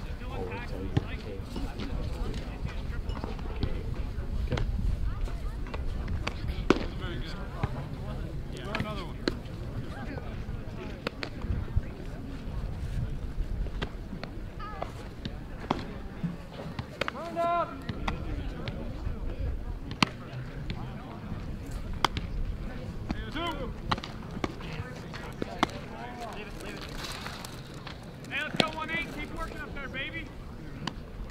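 Open-air ballfield sound: distant voices of players and spectators calling out now and then over a low steady rumble, with occasional sharp knocks.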